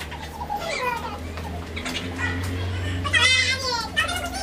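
Excited voices of young people calling out, with a loud, high, wavering shriek about three seconds in, over a steady low hum.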